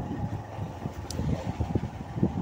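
A 100 cc two-wheeler running along a rough dirt track, its engine noise mixed with wind on the microphone and irregular low thumps from the bumpy ground.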